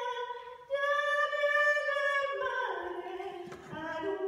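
A woman singing unaccompanied in a trained, operatic voice, holding long high notes. She takes a short breath about half a second in, and the melody steps down in pitch in the second half.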